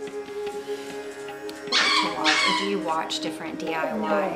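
A dog barks twice in quick succession about two seconds in, with a smaller bark near the end, over background music with a steady drone.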